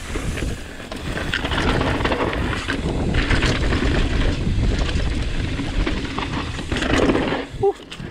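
Cannondale Jekyll full-suspension mountain bike riding fast down a loose dirt singletrack: a steady rough rumble of tyres rolling over dirt and fallen leaves, with a few louder rough patches and knocks from bumps.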